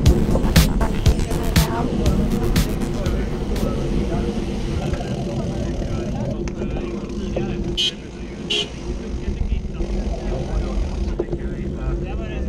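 Wind and road rumble on a road racing bicycle's camera, with knocks and rattles early on, easing off as the bike slows. Over it is a loudspeaker voice and music, and about eight seconds in come two short high-pitched sounds.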